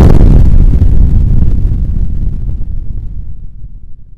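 A boom sound effect: one sudden loud hit followed by a deep rumble that slowly fades out over about four seconds.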